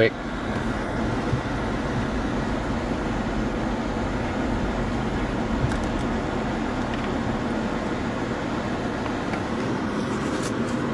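Car driving, a steady road and engine noise heard from inside the cabin.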